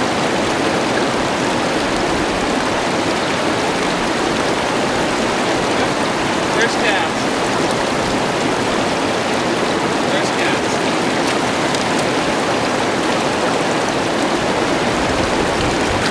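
Steady, loud rush of fast river rapids, an even wash of white-water noise.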